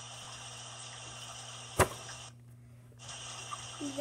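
Steady background hiss with a low hum, broken by one sharp click or knock a little under two seconds in.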